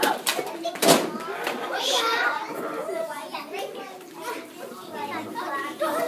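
Background chatter of young children talking and playing, several voices overlapping, with two sharp knocks within the first second.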